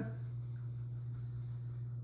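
Quiet room with a steady low hum and faint rustling, after a short laugh right at the start.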